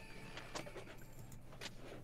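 Faint, scattered light clicks and clinks from a video slot's reels as winning symbols clear and new symbols tumble into place.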